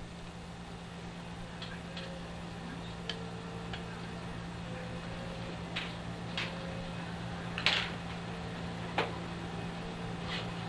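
Paintbrush working wet paint on watercolor paper: a few faint light ticks and a short swish about eight seconds in, over a steady low electrical hum.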